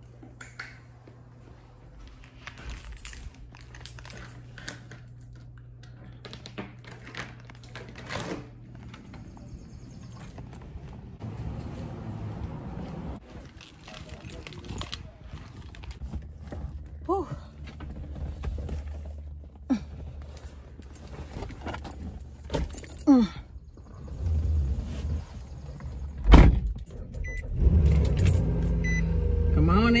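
Keys jangling and handling clatter, then a loud knock about three-quarters of the way through, like a car door shutting. A low rumble of the car's engine and air-conditioning fan grows louder toward the end.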